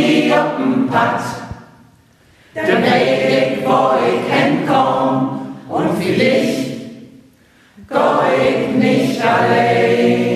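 Mixed choir of men and women singing in Low German, in sung phrases broken by two short pauses, about two seconds in and about seven seconds in.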